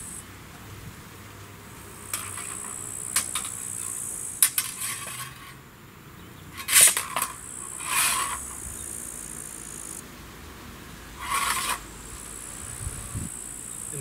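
Steel swords and buckler meeting in a slow bind: a handful of light metallic clinks and short scrapes, the loudest a little past halfway, with a steady high buzz behind.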